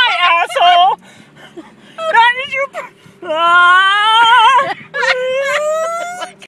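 A person whimpering and whining in fright: short cries in the first second, then after a lull two long, wavering wails that rise in pitch.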